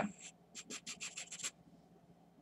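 Felt-tip marker scratching on paper in a quick run of short shading strokes, about ten in a second, starting about half a second in and stopping about halfway through.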